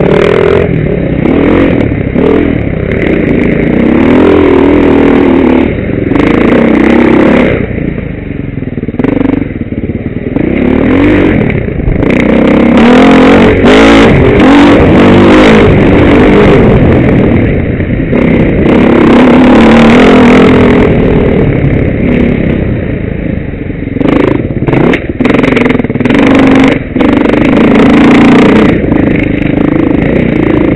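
Enduro dirt-bike engine close to the microphone, revving up and down over and over as it rides the trail, with knocks and rattles from the bike over bumps.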